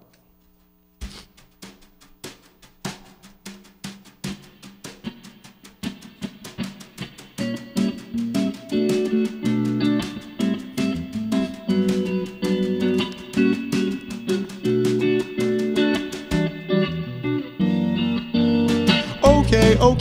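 Live band playing a pop song's instrumental intro: about a second in, an electric guitar starts over a steady run of ticking beats; fuller chords with low notes join around the middle, and the whole band with drums comes in louder near the end.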